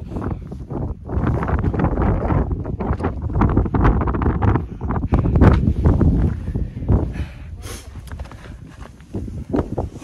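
Wind buffeting the phone's microphone in gusts, loudest in the middle, while a hiker walks up rocky, snowy ground with scattered footstep crunches.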